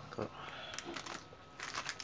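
Plastic-wrapped paper mailer package crinkling as it is handled and turned over, in a few short crackles, the busiest near the end.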